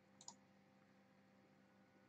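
Near silence: room tone with one faint, short click about a quarter of a second in.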